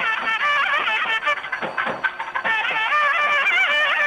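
Nadaswaram playing an ornamented, winding melody over thavil drum strokes. Near the middle the reed melody drops back for about a second, leaving mostly the drum strokes, then comes back.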